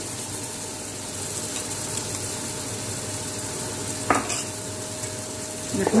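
Onions, peppers and spices frying in a pot with a steady sizzle as tomato purée is poured in, with a single knock about four seconds in.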